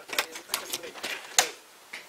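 Front door's lever handle and lock being worked to open the door: a series of sharp metallic clicks and clacks, the loudest about a second and a half in.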